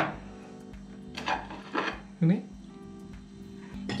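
Soft background music over a steady low hum, with two short knocks about a second and two seconds in.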